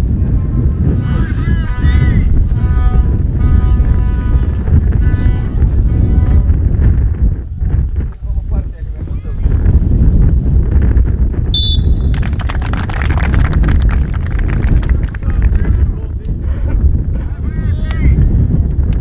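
Wind buffets the microphone throughout. Over the first few seconds there is a string of held notes from the stands. About halfway through comes a short whistle blast, then a few seconds of spectators clapping.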